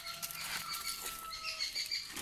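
Birds chirping and whistling in the background, some notes held for about a second, over quiet scuffing and rustling close by.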